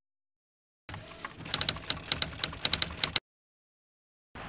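Typewriter key-clatter sound effect: a run of quick, irregular clicks starting about a second in and cutting off suddenly after about two seconds.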